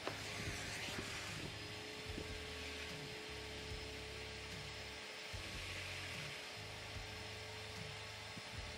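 Numatic Henry Wash carpet extractor's vacuum motor running steadily with a constant hum, its wand sucking water out of a soaked carpet car mat.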